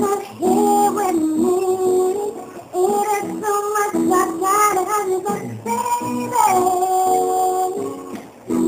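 A woman singing a slow pop ballad solo, in phrases with gliding pitch, ending on one long held note near the end.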